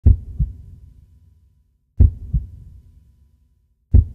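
Heartbeat sound effect: pairs of deep, low thumps, a pair about every two seconds, each fading away, with a third pair just beginning at the end.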